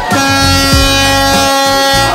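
Semi truck's air horn blown in one long, steady blast of about two seconds, over background music with a beat.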